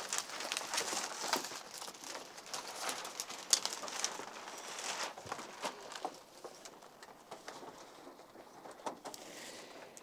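Classroom handling noise: many small clicks, taps and rustles as children get out markers and dry-erase supplies, busiest at first and thinning out about six seconds in.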